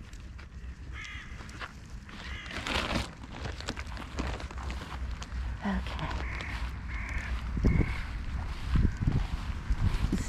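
Crows cawing several times, with a cluster of calls about six to eight seconds in, over a steady low rumble and a few low thumps near the end.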